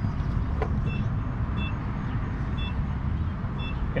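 Steady low rumble at a fuel pump, with a single clunk about half a second in as the fuel nozzle is lifted from its holder. Faint short high beeps repeat about once a second.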